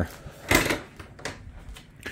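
A single short knock or clunk about half a second in, followed by a fainter click a little later.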